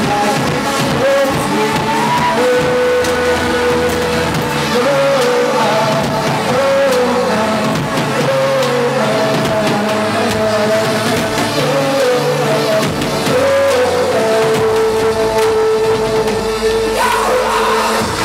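Live electronic dance-pop played loud by a band, with a steady beat under a melody of held, stepping notes.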